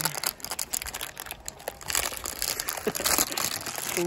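Plastic bag crinkling and a cardboard box being handled as a new motorcycle drive chain, sealed in plastic, is pulled out of its packaging: an irregular, continuous rustle and crackle.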